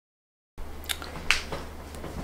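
Dead silence for about half a second where the recording cuts. Then a low steady hum with a few sharp, light clicks and taps from handling as a person moves close to the microphone.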